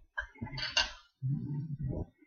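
A mouthful of Trix cereal being chewed: short crunchy clicks in the first second, followed by a low hum in the second half.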